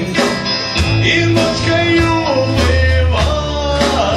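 A live rock band playing a song, with drum kit, bass guitar and electric guitar, and the singer shaking a tambourine.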